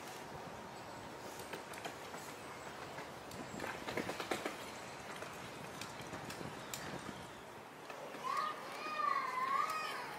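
Open-air background noise with a few light knocks about four seconds in. Near the end an animal gives a wavering, pitched call that lasts under two seconds.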